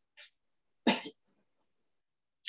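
A single short cough about a second in, preceded by a fainter brief hiss.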